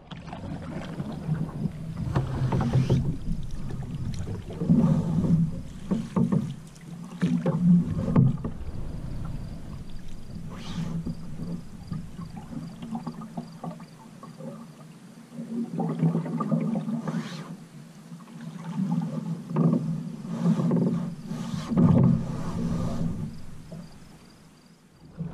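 Single-blade wooden paddle working the water beside a wooden canoe: a swish and gurgle with each stroke, recurring every second or two over a steady low rumble.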